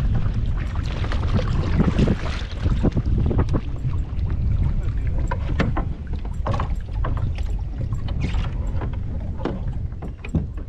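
A kayak paddle splashing through the water for the first couple of seconds, over a steady low rumble of wind on the microphone. Then a run of short knocks and clicks as hands work among gear in the plastic fishing kayak's cockpit.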